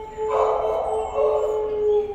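Dogs in the shelter kennels howling in long, steady pitched notes, with a louder, rougher stretch of calling from about a third of a second in that eases off near the end.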